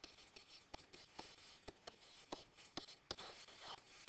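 Faint stylus writing on a digital pen surface: about ten light ticks and short scratches of the pen tip as a short note is written.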